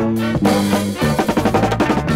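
Funk instrumental from a 1973 vinyl 45 record: drum kit and horns over a bass line, with a quick run of drum hits in the second half.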